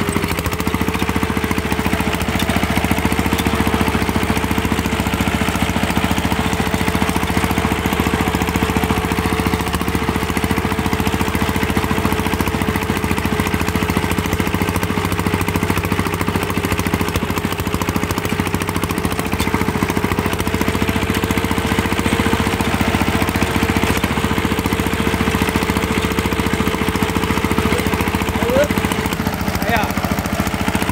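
Yanmar walking tractor's single-cylinder diesel engine running steadily while driving, with a constant whine over the engine note.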